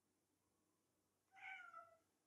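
A domestic cat meowing once, softly: a short call about a second and a half in that falls slightly in pitch.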